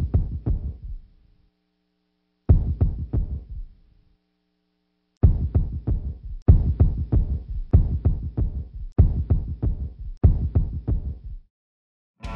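Deep percussive hits from a produced soundtrack, like a heartbeat pulse. They come in short clusters of quick strokes that die away: two spaced clusters at first, then one about every 1.2 seconds from about five seconds in. A faint steady hum runs under the first few seconds.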